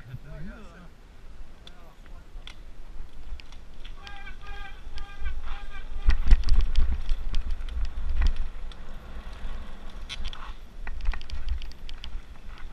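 Mountain bike ridden downhill on a dirt trail, heard from a camera on the rider: wind on the microphone and the bike rattling and rumbling over the ground. The sound gets much louder from about six seconds in as speed picks up. A brief high-pitched sound comes about four to six seconds in.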